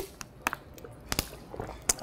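A handful of short, sharp clicks and taps at a laptop, about five in two seconds, irregularly spaced.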